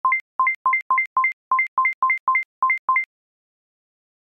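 Electronic alert beeps, each a low tone followed by one an octave higher, repeating irregularly about three times a second and stopping abruptly about three seconds in: a seismic intensity alarm signalling strong shaking registered at a monitoring station.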